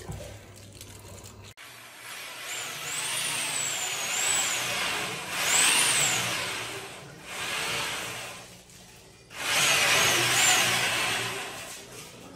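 Electric drill spinning a spring-cable drain-cleaning drum to clear a blocked floor drain. It runs in about four bursts from about two seconds in, its whine rising and falling as the speed changes, with short pauses between.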